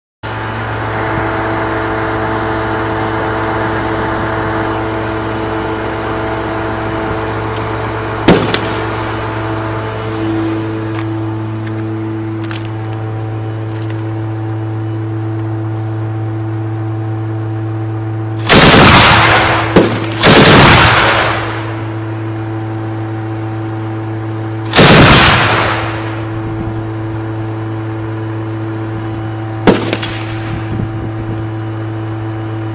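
Turret machine gun of a BTR-80 armoured personnel carrier firing: a single shot about eight seconds in, then three bursts of about a second each in the second half, and a short one near the end. The bursts are the loudest sound, over the steady running of the vehicle's engine.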